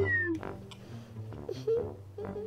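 A young girl's drawn-out, falling wail ends just after the start. It is followed by short whimpering cries about halfway through and again at the end, over soft background music.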